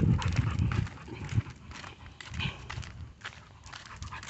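A pit bull-type dog panting close by as it walks on a leash, with footsteps scuffing on the sidewalk; the first second and a half is loudest, then it settles to lighter, irregular ticks and scuffs.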